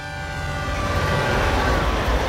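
Freight train horn held on a steady chord, fading out about three-quarters of the way through as the low rumble of the passing train grows louder.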